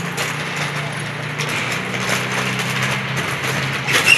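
Thick clear plastic vacuum storage bag packed with clothes crinkling and rustling with many small crackles as it is pressed down and its edge pinched closed by hand, with a steady low hum underneath.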